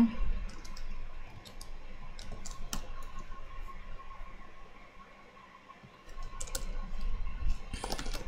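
Typing on a computer keyboard: scattered, irregular keystrokes, including a paste shortcut, with a brief lull in the middle. A faint steady high hum runs underneath.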